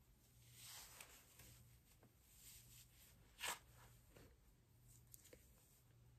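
Near silence with faint rustling as a synthetic short bob wig is handled and pulled onto the head. There is one brief, louder swish about three and a half seconds in.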